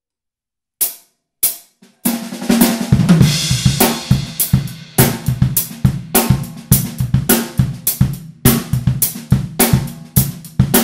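Drum kit playing a syncopated bass drum exercise in a dotted eighth-sixteenth funk feel, with snare, hi-hat and cymbals. Two sharp clicks come first, and the full kit comes in about two seconds in with a wash of cymbal ringing over the first couple of seconds of the groove.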